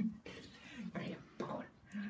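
A person's soft, whispery voice making a few brief quiet sounds.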